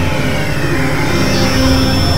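Experimental synthesizer drone music: a dense, noisy wall of sound over a low rumble, with held tones and pitch sweeps gliding down and back up.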